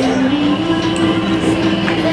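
Young children singing a song together over recorded backing music, holding one long note.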